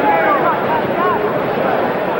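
Arena crowd at a boxing match: a steady crowd murmur with individual spectators shouting over it in the first second or so.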